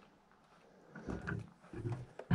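A man's voice making two short, low murmurs, wordless hums or grunts, about a second in and again near the end, after a moment of near silence.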